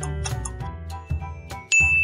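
Upbeat quiz background music with a light ticking beat, then near the end a bright chime sounds suddenly and rings on: the answer-reveal ding as the countdown runs out.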